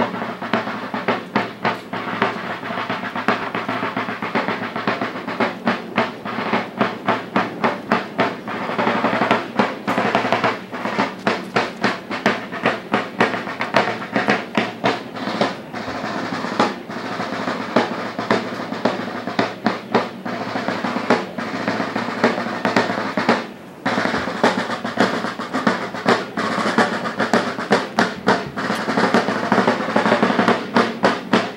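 Snare drums played in a fast, steady rhythm of strikes, dropping out briefly about three-quarters of the way through.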